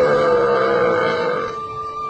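A loud, low moo-like call that starts suddenly and lasts about a second and a half, with steady flute-like tones sounding underneath it.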